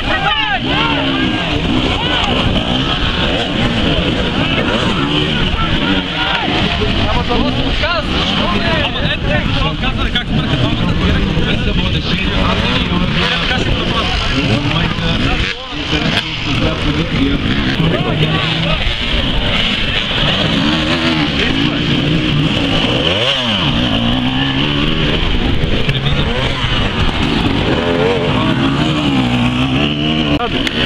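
Enduro dirt-bike engines revving up and down in short blips under load, the pitch rising and falling again and again. The sound changes abruptly about halfway through.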